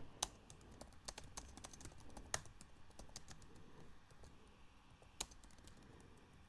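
Faint typing on a computer keyboard: quick, irregular keystroke clicks, with a few sharper taps standing out, one of them about five seconds in.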